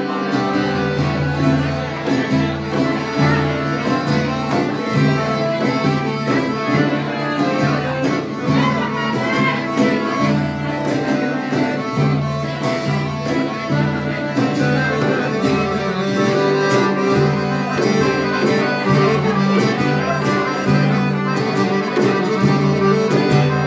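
Live Greek folk band playing an ikariotiko, the dance tune from Ikaria, on acoustic guitar, accordion and a hand-struck frame drum, with a steady, lively dance beat.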